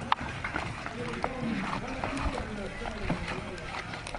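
Indistinct voices talking, with a few scattered light knocks.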